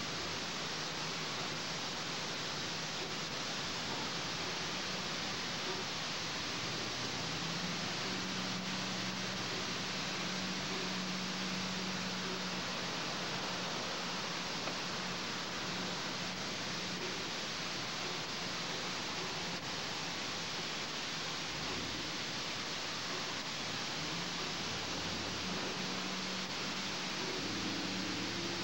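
Mark VII Aquajet GT-98 rollover car wash working over a pickup truck: a steady rushing hiss with a faint low hum underneath.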